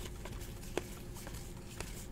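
Faint handling of a stack of baseball trading cards: soft sliding of cards against each other with a few small clicks, the clearest about three-quarters of a second in.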